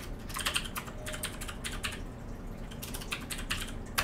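Computer keyboard typing: two quick runs of keystrokes, the first at the start and the second about three seconds in, with a quieter stretch between.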